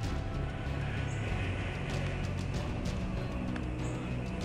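Background music with sustained, steady tones.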